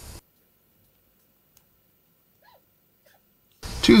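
Near silence: the sound track drops out almost completely, with only a few very faint, brief blips.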